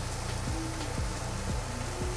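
Eggs and chopped chicken breast frying together in a pan: a steady sizzle, with quiet background music underneath.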